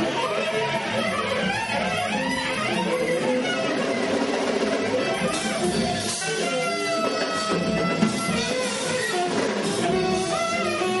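Live free-jazz ensemble improvising, with a bowed viola playing energetically among a dense, busy tangle of instrumental lines; a brighter high shimmer joins about halfway through.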